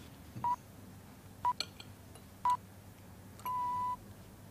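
Radio hourly time signal: three short beeps about a second apart, then a longer beep at the same pitch marking the full hour just before the news.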